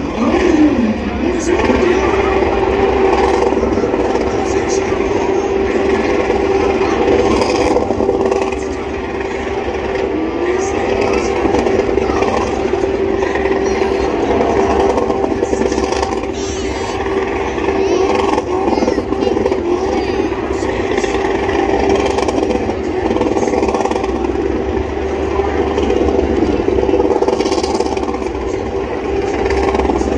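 A car's engine held at high revs through a burnout. After a few quick revs at the start it holds a steady high note, which sags briefly about ten seconds in and climbs back.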